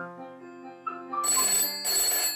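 Telephone bell ringing in two short rings, starting a little over a second in, over quiet background music.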